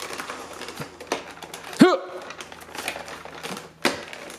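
Irregular plastic clicks and knocks of hands fitting batteries and the battery cover into a motorised Nerf Rival blaster, with a short voiced 'hm' a little before halfway.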